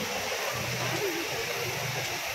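Fountain jets spraying, a steady hiss of falling water, with faint crowd voices. A low hum comes and goes twice.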